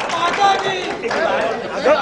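Several people talking at once in a room, voices overlapping into chatter.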